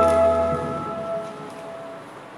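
The last held chord of a sung church hymn, voices with a low sustained accompaniment, ending and fading away: the low part stops about half a second in and the upper notes die out over the next second, trailing off in the church's reverberation.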